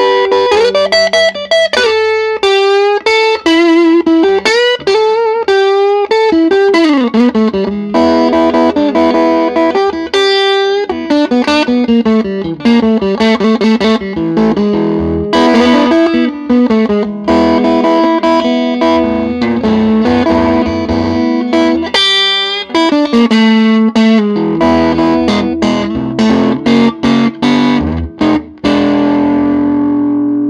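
Electric blues guitar lead on a Fender Stratocaster through a Grammatico Kingsville 45-watt tube amp turned up loud, with bent notes and quick runs, ending on a held note left to ring.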